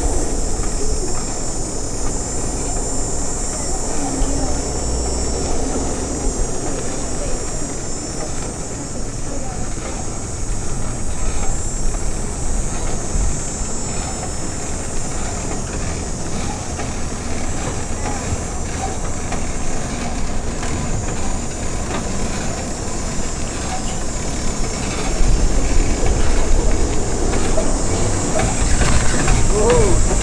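Polar-bear art car rolling slowly closer over concrete: a steady low rumble of the vehicle that grows louder over the last few seconds as it arrives, under a steady high hiss.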